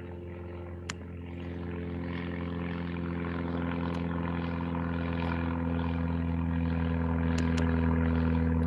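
A steady motor or engine drone held at one pitch, growing gradually louder.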